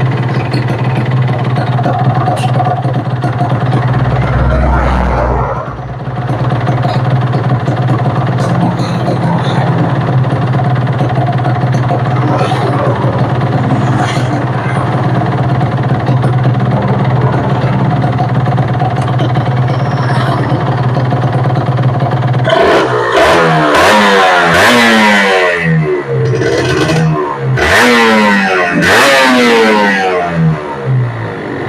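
Kawasaki Ninja R's 150 cc two-stroke single idling steadily on the stand while its carburettor air screw is set for idle and throttle response after the Super KIPS power valve adjustment. Near the end it is revved hard twice, the pitch rising and falling with each blip.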